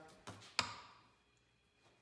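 A small piece of wood being handled: a couple of light knocks, then one sharp tap about half a second in that rings briefly before dying away.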